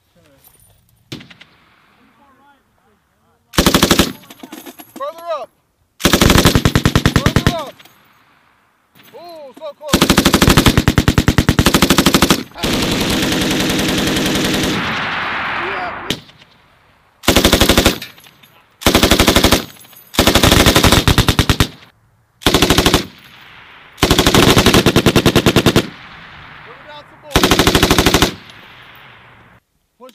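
Belt-fed machine gun firing about nine bursts of rapid shots, most a second or two long, the longest about ten seconds in and followed by a rolling echo across the range.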